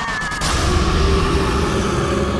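Trailer sound design: a sudden heavy hit about half a second in, then a loud low rumble with a steady held tone over it.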